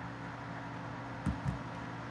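Two computer mouse clicks about a quarter second apart, a little over a second in, over a steady low electrical hum.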